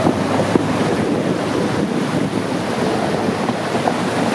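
Water splashing and rushing around a pickup truck as it drives through a shallow river, with wind noise on the microphone.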